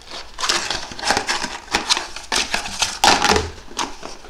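An empty cardboard paper towel tube being clawed, bitten and kicked by a cat, scraping and knocking on a tile floor. It makes a rapid, irregular run of crunches and scrapes, loudest about three seconds in.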